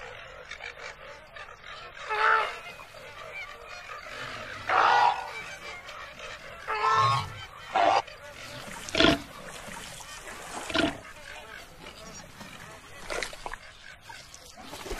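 Flamingo honking calls: about half a dozen short honks, one every second or two, over a faint steady background.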